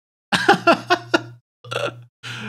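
A man laughing: a quick run of laughs for about a second, then a short second laugh near the end.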